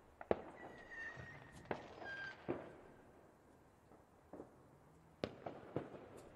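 New Year's Eve fireworks and firecrackers going off across a city, a scattered series of sharp bangs at irregular intervals, the loudest in the first second and a quick cluster of three near the end. Two short high whistles sound in between the first few bangs.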